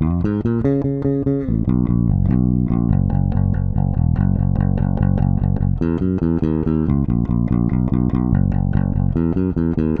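Fender Jazz Bass played fingerstyle on its own, a continuous rock bass line of plucked, ringing notes, with a couple of higher note runs about a second in and again near six seconds.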